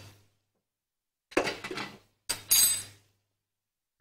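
A metal spoon clattering against cookware twice as ground spices are added to the pan. The second clatter has a brief high metallic ring.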